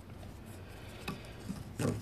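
A PVC pipe coupling handled and turned over on a wooden board: faint rubbing with a few light clicks, and a short louder scrape or knock near the end.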